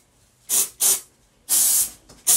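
Small hand spray bottle misting product onto hair: two short sprays, then a longer one near the end.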